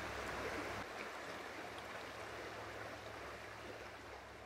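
A small river flowing, a steady rush of water that slowly fades out.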